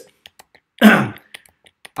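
A man clearing his throat once, a short loud rasp about a second in.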